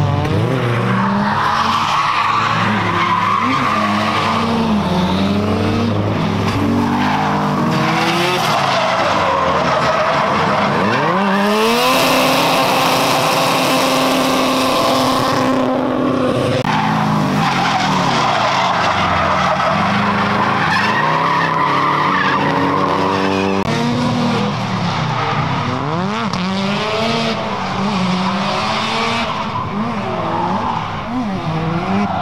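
Drift cars on track: engines revving hard, pitch rising and falling over and over as the throttle is worked, with tyres squealing through the slides. About halfway through comes the loudest stretch: a sustained tyre screech of several seconds over an engine held at steady high revs.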